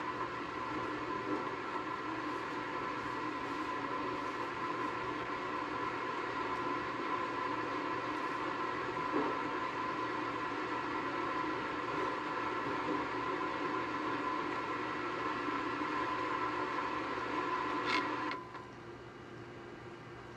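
A steady hum of several held tones, played through a speaker from the projected video, that cuts off suddenly shortly before the end.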